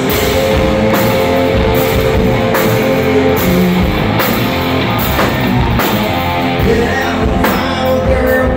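Live rock band playing loud: electric guitar over a drum kit keeping a steady beat, a hit about every 0.8 seconds.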